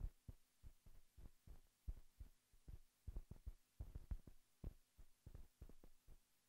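Near silence with faint, unevenly spaced low thumps, about three a second.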